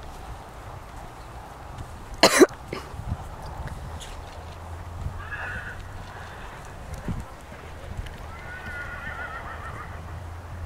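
A horse's hooves thudding softly on grass in a dressage arena, with a loud short burst of noise about two seconds in. Near the end a horse whinnies, a wavering call.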